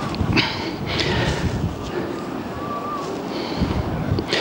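Wind buffeting the camcorder microphone: a loud, uneven rumble that swells and drops in gusts, with faint voices mixed in.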